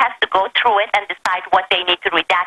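Only speech: a person talking continuously over a telephone line, the voice thin and narrow.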